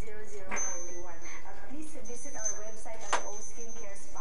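A hanging string of small bells being knocked by a climbing green iguana: metallic jingling and clinking, with two sharper strikes about half a second and about three seconds in and a thin high ringing that carries on after the first.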